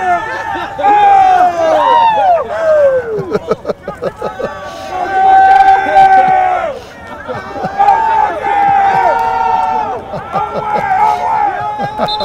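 A group of football players shouting and cheering together, voices overlapping, with several long drawn-out yells, the longest a little past the middle.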